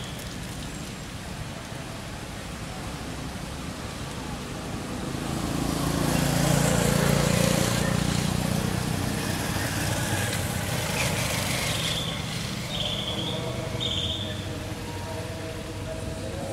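A motor vehicle passing by, its sound swelling over a few seconds and then fading. Near the end there are three short high chirps about a second apart.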